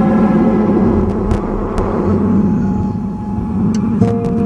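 A dance soundtrack played over the hall's speakers: a loud rumbling noise, like a passing vehicle sound effect, over steady held drone tones, easing off toward the end.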